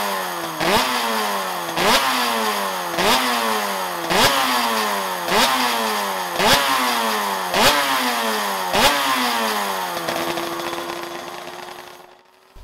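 Suter MMX500's 576cc V4 two-stroke engine being blipped over and over, about once a second, the revs jumping up and sliding back down each time. Near the end the revs hold a steady note and fade away.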